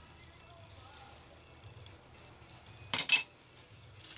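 A brief metallic clatter about three seconds in: a small metal tool or part clinking against the metal workbench, over a faint low hum.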